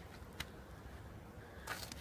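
Quiet outdoor background with a faint low rumble, a soft click about half a second in, and a brief rustle with a few small clicks near the end.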